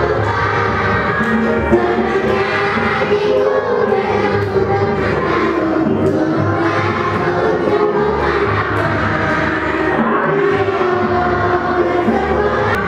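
Background music with singing voices, running steadily.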